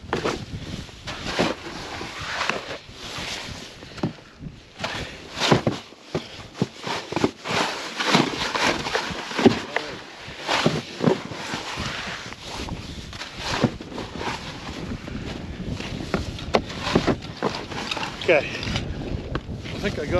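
Shovel digging and scraping through snow and slush in irregular strokes, clearing it from in front of a snowmobile's track that is stuck in slush.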